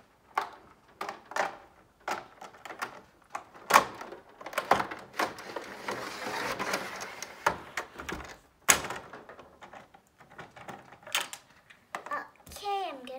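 Irregular clicks and knocks of hard plastic as a Barbie doll is handled and moved through a plastic dollhouse. The two loudest knocks come about four and nine seconds in, and a stretch of soft rustling noise fills the middle.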